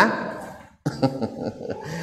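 A man's loud, drawn-out "hah" that trails off, then after a brief gap a quieter chuckle.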